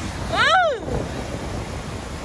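Surf washing up on a sandy beach, with wind buffeting the microphone. About half a second in, a high voice gives one short exclamation that rises and then falls in pitch.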